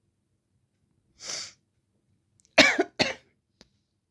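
A person coughing twice in quick succession past the middle, after a short breath about a second in, followed by a faint click.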